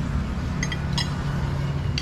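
A few light clinks of a metal spoon on a dish, over a steady low hum.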